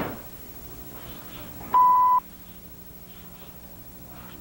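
A sharp thump at the very start, then about two seconds in a single electronic beep: one steady high tone lasting about half a second, over quiet room tone.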